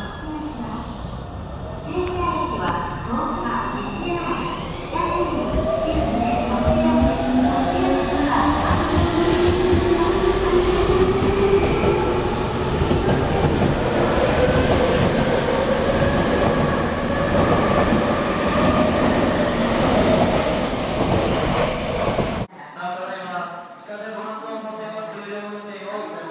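Tobu 30000 series electric train pulling out of the station, its inverter and traction-motor whine rising steadily in pitch as it gathers speed, over wheel and rail noise. The sound cuts off suddenly near the end.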